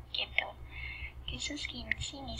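Soft, half-whispered speech from the lecturer, over a steady low hum.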